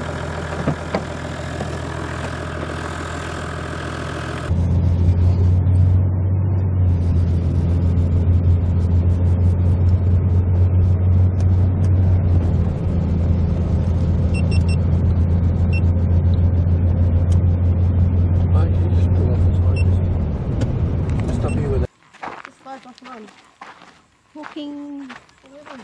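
A four-wheel drive's engine idling steadily for the first few seconds, then a loud, steady low engine and road drone heard inside the cabin while the vehicle drives along, cutting off suddenly a couple of seconds before the end.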